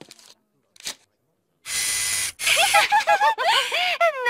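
Vending machine bill acceptor taking a dollar bill: a click about a second in, then a steady whir lasting about half a second. A high-pitched, sing-song voice with a wavering pitch follows.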